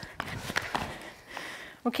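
A few faint, irregular taps of a skipping rope and light footfalls on a gym floor.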